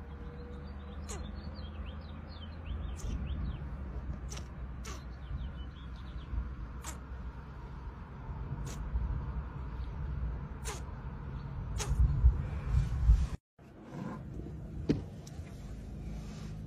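Repeated short lip smacks, kissing sounds, about once a second over a low rumble. A louder rustling passage near the end cuts off suddenly.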